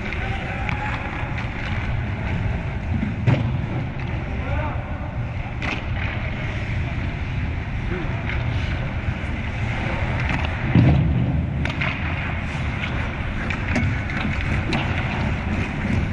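Ice-rink ambience during a hockey game: a steady low rumble with distant, unclear shouts from players and scattered clicks. There is a louder knock about three seconds in and another nearly eleven seconds in.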